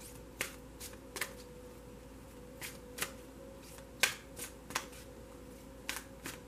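A tarot deck being shuffled by hand: short, sharp card snaps at irregular intervals, the loudest about four seconds in, over a faint steady hum.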